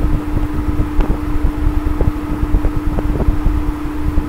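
Steady background hum: one constant tone over a low rumble, with a few faint clicks.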